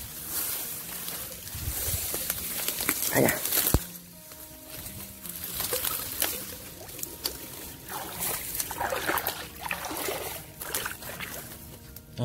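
Dry rice straw and reeds rustling and crackling as a collapsible wire-mesh fish trap is pushed through them, with water sloshing as the trap goes into a ditch near the end.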